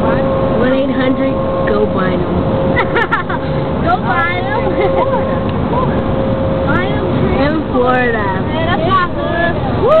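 Road and engine noise heard from inside a moving car travelling close alongside a tractor-trailer tanker truck, with a steady tone for the first seven seconds or so. People's voices and laughter run over it.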